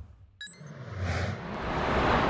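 Heavy rain pouring, a steady hiss that swells over the second half. Just before it, about half a second in, a brief sharp click with a high beep-like ring.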